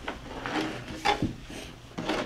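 Hands and a phone rubbing and knocking on a wooden tabletop: a few short scrapes, the strongest about half a second and a second in.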